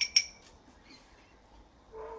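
A metal teaspoon clinks twice against a glass jar of water as the stirring stops, both clinks right at the start.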